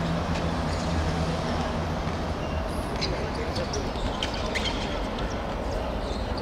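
Outdoor football-court ambience: distant voices of players and onlookers over a steady background hum, with a low drone in the first two seconds and a few short sharp clicks in the middle.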